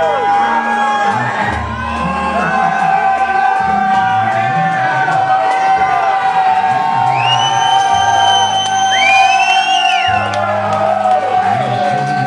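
Rock band playing live: a long held note rings over changing bass-guitar notes, with bending notes near the start and end. The crowd whoops and cheers, and two rising whistles come about seven and nine seconds in.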